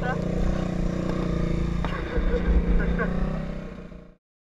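Kawasaki KX250F single-cylinder four-stroke dirt bike engine running steadily at low revs, heard close up, fading away near the end.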